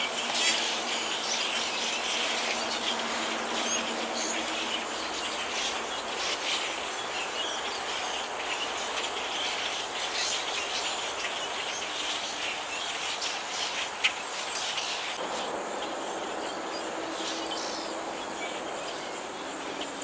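A large flock of dark songbirds chattering and calling continuously, a dense mass of overlapping chirps. A single sharp click sounds about two-thirds of the way through.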